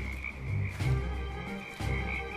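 A frog chorus calling steadily in a high, continuous band, over background music with low bass notes about once a second.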